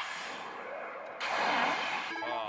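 Millionaire God: Kamigami no Gaisen pachislot machine playing a loud rushing sound effect during a suspense-building screen effect. The effect starts suddenly and swells louder about a second in.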